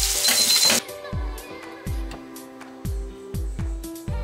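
Scallops in butter sizzling in a frying pan, cut off suddenly about a second in. Then background music with a steady beat.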